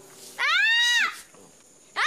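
A woman's high-pitched crying wail: one drawn-out cry that rises and then falls, with another cry starting right at the end.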